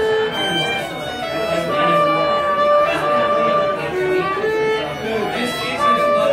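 Solo fiddle being bowed through a tune: a melody of held notes, some long and some short, moving up and down in pitch.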